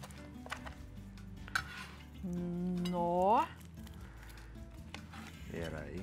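A kitchen knife cutting through the crisp, browned crust of a baked cheese pizza tart on a cutting board, with sharp cracks and knife clicks against the board. In the middle a voice hums one long "hmm" that rises at the end, over quiet background music.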